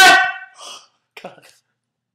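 A person's high-pitched, drawn-out voice fading out within the first half second, then two faint brief sounds and dead silence.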